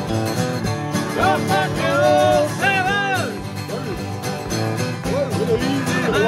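Two acoustic guitars strummed together in a live country-folk accompaniment. A gliding melody line rises and falls over them in the first half.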